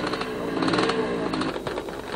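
Small vintage single-cylinder motorcycle engine running, a rapid train of firing pulses whose speed rises and falls as the throttle is worked.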